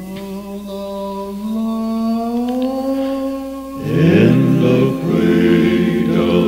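Gospel quartet singing a cappella in four-part harmony. A long held chord slowly rises in pitch, then about four seconds in the voices come in louder on a new phrase.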